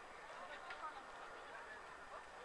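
Faint, distant short calls and shouts carrying across an outdoor football pitch during play.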